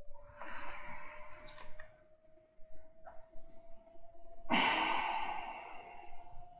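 A man sighing and breathing out heavily into his hands, twice: once just after the start for over a second, and again about four and a half seconds in. A faint steady tone hums underneath.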